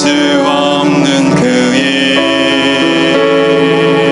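A slow worship song: a group of voices singing long held notes over piano accompaniment.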